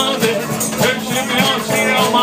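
Live band music: electric guitar, upright double bass and drum kit playing together with a steady beat.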